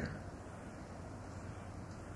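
A pause in speech: faint, steady hiss and low hum of room tone on an old quarter-inch reel-to-reel tape recording.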